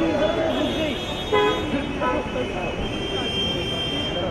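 A car horn toots briefly about a second in, with a second short toot near two seconds, over people talking and laughing around a car at idle.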